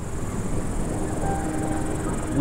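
Rural outdoor ambience: a steady high-pitched insect chirring over a continuous low rumble.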